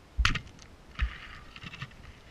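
Speargun fired underwater: a sharp clack, then about a second later a second thud followed by a run of crackling clicks.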